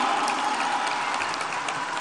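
Audience applauding, a dense crackle of many hands clapping that slowly fades.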